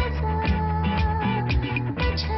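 A pop-rock band playing: drums keep a steady beat about twice a second under bass and electric guitar, and a woman sings lead, holding one long note through most of it.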